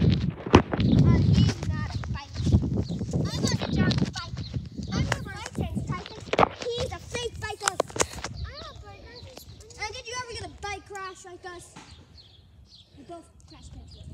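Footsteps on concrete and heavy wind rumble on the microphone from someone moving on foot, with scattered knocks. Children's high-pitched shouts are heard in the middle and fade toward the end.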